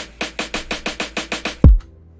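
Lo-fi beat playing from a digital audio workstation: a snare roll of quick even hits, about six a second, ending in one loud, deep kick drum whose pitch drops, over a held chord.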